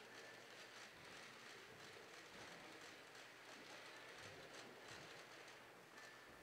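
Near silence: faint room tone with a few soft rustles and clicks.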